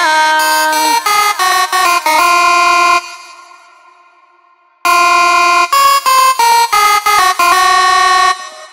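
Electronic dance music: a bright synth lead plays a riff of short notes, breaks off about three seconds in and trails away, then comes back in with quick, choppy notes near the five-second mark.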